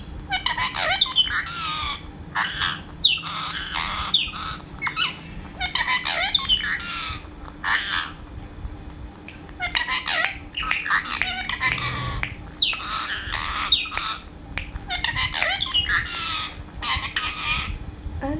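Indian ringneck parakeet chattering and squawking in quick short bursts, with gliding squeaks. It falls quiet briefly about halfway through, and again a few seconds later.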